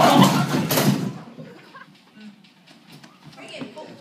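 Loud shrieking and yelling voices for about the first second, then quiet with faint scuffs and steps.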